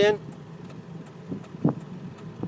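Ford 7.3-litre Power Stroke V8 turbo diesel running at low revs, heard from inside the cab as the truck rolls slowly, with a short tap about one and a half seconds in.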